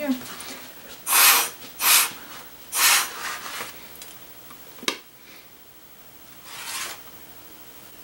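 Short puffs of breath blown through a drinking straw onto wet watercolour paint: three strong puffs about a second apart, then a fainter one near the end. A single sharp tap comes about five seconds in.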